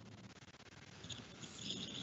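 Near silence on a video-call line: faint steady hiss, with faint soft sounds creeping in during the second half.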